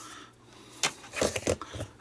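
Hard plastic wireless-mic transmitter and receiver units being set down on a cutting mat: a quick run of light knocks and clatters starting about a second in.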